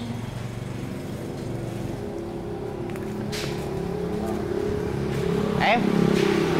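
A motor-vehicle engine runs with a steady hum that slowly grows louder, over street background noise. A brief high clatter comes about three seconds in.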